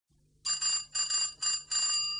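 A high, bright bell rung four times in quick succession, about two rings a second.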